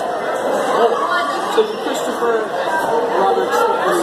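Overlapping chatter of several voices talking at once, no single voice standing out clearly.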